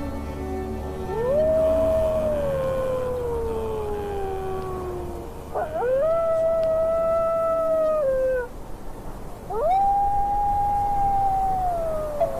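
Wolf howls: three long howls, one after another, each gliding up, holding, then slowly falling in pitch. The first begins about a second in and the last slides down near the end.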